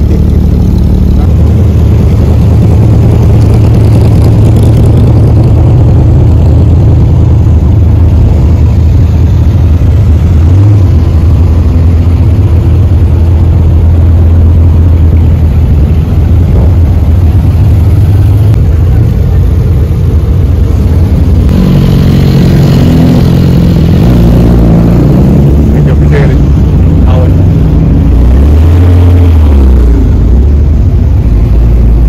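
Loud sports-car engines running at low revs as cars pull past, a steady deep rumble for about the first twenty seconds. After that the engine notes shift and overlap, with a brief rev near the end.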